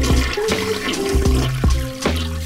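A toilet flushing with a rush of water, heard over background music with a drum beat.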